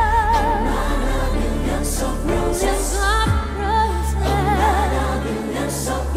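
A woman's solo voice singing a ballad with wide vibrato over a live band, opening on a long held note, with a backing choir.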